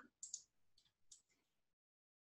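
Three or four faint computer mouse clicks in the first second and a half, at near-silent level.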